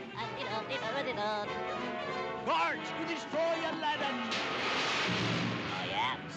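Orchestral cartoon score with a swooping, yelling voice about two and a half seconds in. From about four seconds on, a long rushing noise comes in over the music.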